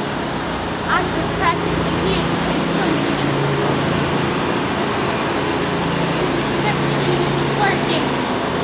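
Steady low mechanical hum under a broad rushing urban noise, with a few faint distant voices over it.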